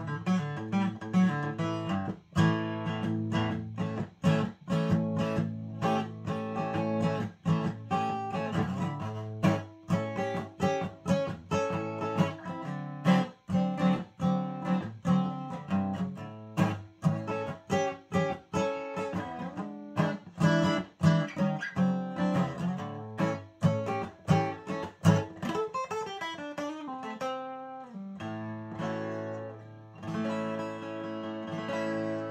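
Martin DC-35E cutaway dreadnought acoustic guitar strummed and picked in a quick, steady rhythm, with a full low end; the playing thins briefly near the end before full chords ring again.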